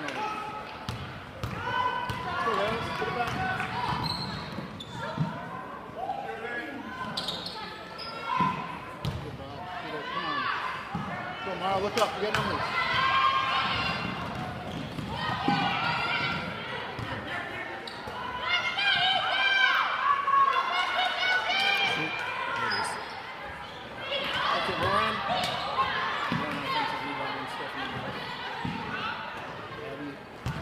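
Basketball being dribbled on a hardwood gym floor during live play, with repeated bounces, mixed with voices of players and spectators calling out in a large gymnasium.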